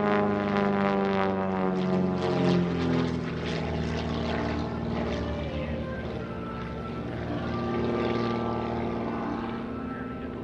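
Super Chipmunk aerobatic airplane's piston engine and propeller in flight. The engine note falls in pitch over the first few seconds, then runs steadier and grows louder again near the end.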